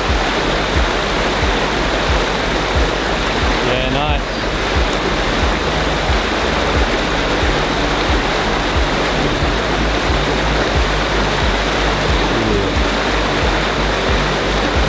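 Flooded river rapids rushing steadily, with background music carrying a steady low beat underneath.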